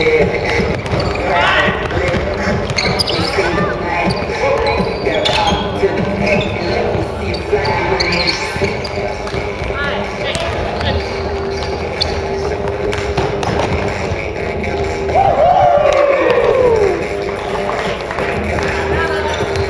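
A basketball being dribbled and bouncing on a wooden gym floor during a game, with players' shoes on the court and their voices calling out, one loud falling shout near the end.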